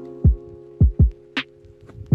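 Background music: low kick-drum beats, two in quick succession near the middle, under held instrument chords, with one sharp drum hit.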